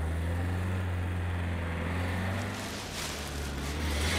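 Hong Kong green minibus (Toyota Coaster) driving past: a steady low engine hum, with a rush of tyre and air noise swelling about three seconds in as it goes by.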